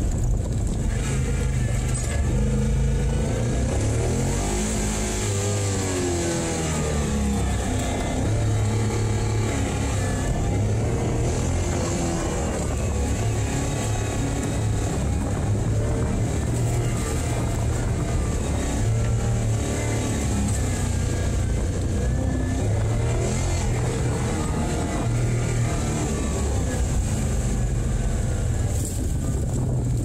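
LS6 V8 in a Porsche 914 being driven hard through an autocross course, heard from inside the cabin, its revs rising and falling over and over through the turns.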